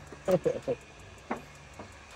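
A few short spoken sounds early on, then a couple of faint clicks over a faint low steady hum.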